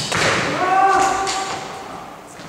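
A thud on a badminton court, then a drawn-out high cry of about a second from a player as the rally ends, in a reverberant sports hall.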